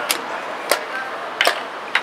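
Sharp clicks of chess pieces being set down on the board and the chess clock's button being pressed during a blitz game. There are about five clicks, roughly half a second apart, two of them close together.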